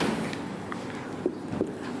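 Classroom room noise in a pause between words: a steady hiss with a short click at the start and a few faint knocks.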